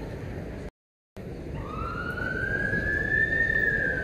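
A siren's long wail that rises slowly in pitch from about a second and a half in, then begins to fall, over steady background crowd noise. The audio cuts out completely for about half a second just before one second in.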